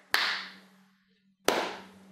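Two sharp hand strikes about a second and a half apart, each fading in a short echo, over a faint steady hum.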